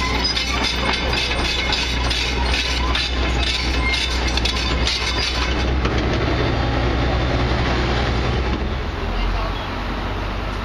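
Hitachi Zaxis 135US crawler excavator running, its diesel engine a steady low hum under a busy metal clanking and rattling that thins out after about six seconds. The sound drops a little in level near the end.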